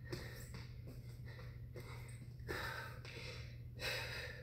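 A person breathing hard from exertion, with several short, sharp exhales and one longer breath about two and a half seconds in, over a steady low hum.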